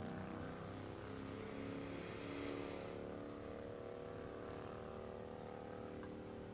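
A faint steady drone of several held low tones, unchanging throughout, with a soft hiss swelling and fading about two to three seconds in.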